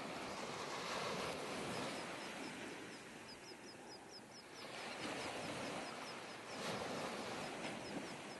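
Small waves washing onto a beach, the wash swelling and ebbing, with faint high chirps in the middle.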